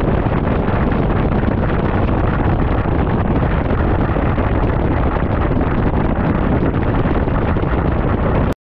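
Heavy wind buffeting the microphone over the rush of a fishing boat running fast, a loud, even noise.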